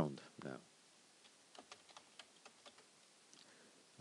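Faint computer keyboard typing: a quick run of light key clicks as a short word is typed, starting about a second in and stopping shortly before the end.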